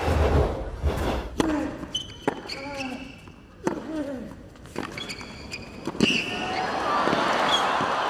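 Tennis rally on a hard court: racket strikes on the ball about once a second, with shoe squeaks and a player's grunt between shots. After the last strike, about six seconds in, crowd noise swells.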